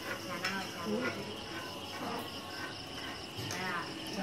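Night insects chirping in a steady, dense high-pitched chorus, with faint voices beneath.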